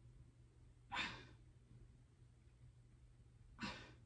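A person breathing out twice in short, heavy exhalations while stretching, about a second in and again near the end, over a faint low hum.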